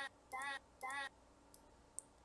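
A quarter-second snippet of a sung Mandarin syllable ("ja") from a song's vocal track isolated by an online vocal remover, played back from the computer three times in quick succession, each replay the same. The syllable sounds indistinct, which is typical of the vocal remover's imperfect separation. A single sharp click comes at the end.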